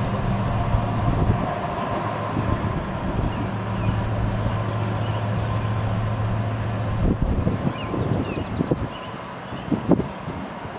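GE ES44AC diesel-electric locomotive, the train's rear distributed-power unit, giving a steady low drone from its V12 engine under power as it moves away. The drone drops out about seven seconds in, leaving wind rumbling and buffeting on the microphone.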